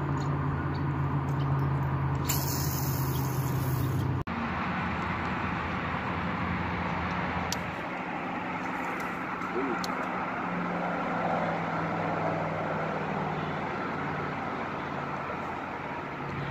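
A steady low motor-like hum. From about two seconds in, a hiss of about two seconds: line running off a fishing reel on a cast, from a rod that sounds too dry.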